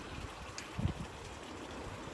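Faint steady outdoor background noise, with one brief low sound a little under a second in.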